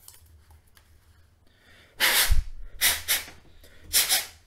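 Three short, forceful puffs of breath blown onto a manual can opener to clear away carborundum grit left by sanding. The first, about two seconds in, comes with a low thump; the second follows about a second later and the third at the very end. Faint handling sounds come before them.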